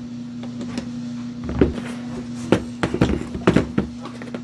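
Sharp metallic clinks and knocks of bolt hardware and a wrench against a steel platform frame as a bolt and lock nut are fitted, coming in a quick cluster in the second half, over a steady low hum.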